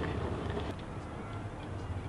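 Steady low rumble of outdoor city background noise, with a few faint, irregular ticks.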